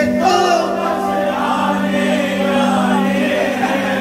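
Hindi devotional kirtan (bhajan) singing: a lead male singer with the gathered devotees singing together, holding a long note.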